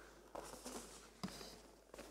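Faint rustling of a rolled paper poster being unrolled, a few soft crinkles spread across the moment.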